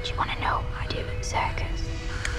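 A girl whispering two short breathy phrases, one near the start and one about a second later, over a low, droning horror score with a steady held tone.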